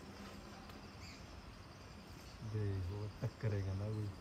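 Faint, steady chirping of insects in the background. Near the end comes a louder, low, voice-like hum in two parts, split by a short click.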